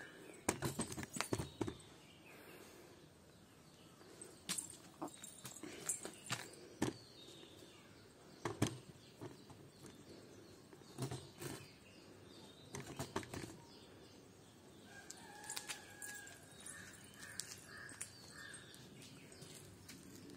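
Stiff stick broom sweeping dry leaves and grit across concrete, in irregular bursts of short scratchy strokes. From about three quarters of the way in, a bird calls repeatedly.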